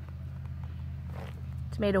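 Steady low background hum with faint rustling and small clicks during a pause, then a woman's voice near the end.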